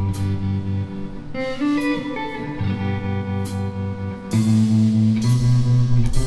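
Live blues band playing an instrumental passage: electric guitar notes over bass guitar, keyboard chords and drums with cymbal hits. The band gets louder a little over four seconds in.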